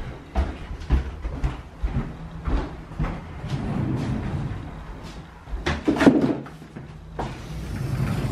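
Footsteps and small knocks on a timber floorboard floor, then a built-in wardrobe's sliding door being slid open, the loudest sound, about six seconds in.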